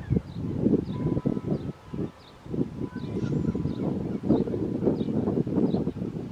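Irregular, gusty low rumble of noise on the camera's microphone, the loudest sound throughout. Behind it a small bird gives faint high chirps, repeating about one and a half times a second, and a faint steady tone starts about a second in.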